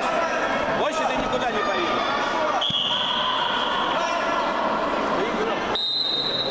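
Two long steady whistle blasts in a sports hall, the first about halfway through and the second, slightly higher, near the end, over constant voices. They are typical of the referee's whistle ending a youth wrestling bout. A dull thump comes just before the first blast.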